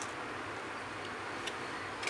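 Quiet room tone: a steady low hiss, with one faint tick about one and a half seconds in.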